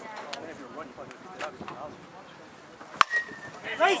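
Softball bat hitting a pitched ball: one sharp crack about three seconds in, with a short ringing tone after it. Shouting from teammates follows near the end.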